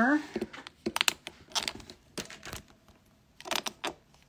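Scattered sharp clicks and knocks, about a dozen in the few seconds, as small objects are picked up and set down on a cluttered work table.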